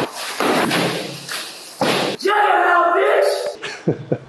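Men laughing without words: several breathy bursts of laughter, then a drawn-out voiced sound held for over a second, about two seconds in.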